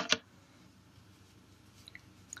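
A brief plastic clatter as a hard plastic phone case frame is picked up off a tabletop right at the start, then near-silent room tone with a faint tick near the end.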